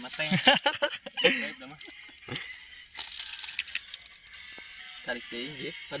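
People talking indistinctly over a faint sizzle of oil frying in a small pan on a portable gas camping stove, with a few sharp clicks from the metal spoon.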